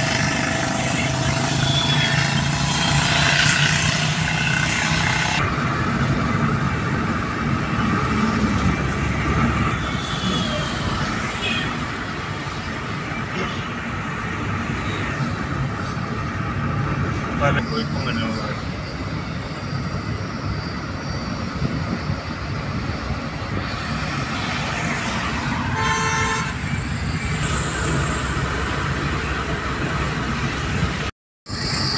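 Road and engine noise heard from inside a moving car on a highway, with vehicle horns honking in the traffic, including a held pitched sound in the first few seconds and a short burst of toots late on.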